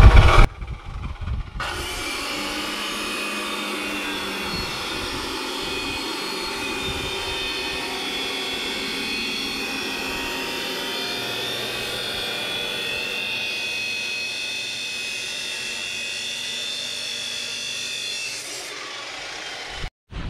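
Abrasive cut-off saw (chop saw) cutting through steel tubing: a steady grinding whine that starts a second or two in and stops near the end.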